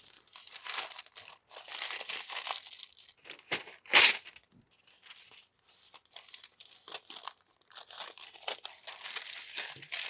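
Brown masking paper crinkling and rustling as it is drawn off a 3M hand masker with painter's tape and pressed onto a wall, with one sharp, loud tear of the paper about four seconds in.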